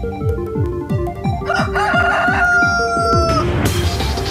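A rooster crowing once, a call of about two seconds starting about a second and a half in, over electronic music with a steady beat.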